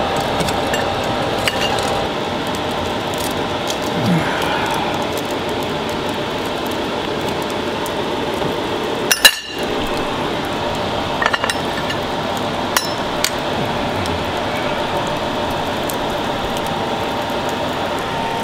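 Pan and utensil clinking and knocking against a ceramic plate while burnt, hardened Coke sugar is scraped out. Scattered sharp clinks sound over a steady background noise, with one loud knock about nine seconds in.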